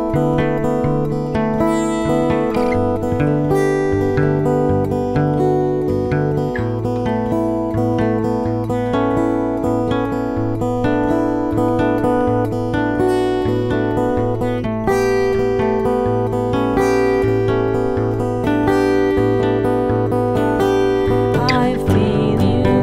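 Two acoustic guitars playing an instrumental passage of a song, a steady strummed and picked pattern of changing chords with no singing.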